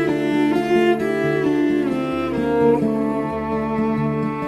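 Instrumental break in a slow ballad: bowed strings, cello-like, carry a slow melody over sustained low bass notes.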